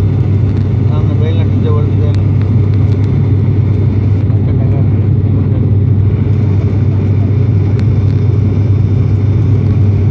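Airliner cabin noise in flight: a loud, steady drone of engines and airflow with a strong low hum.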